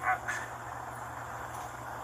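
A brief spoken sound at the very start, then a steady outdoor background hum of street and vehicle noise.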